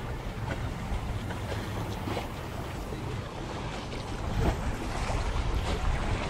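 Wind buffeting the microphone over the wash of open water, with a few faint irregular ticks. It grows a little louder in the last couple of seconds.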